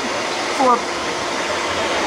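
Vitamix blender motor running steadily at high speed, whirring the liquid in its container: the self-clean run of the container.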